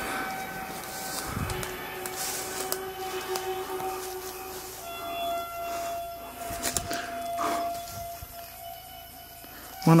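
Background music of long, steady drone tones that change pitch a few times. Under it, a few brief rustles of footsteps brushing through grass and dry leaves.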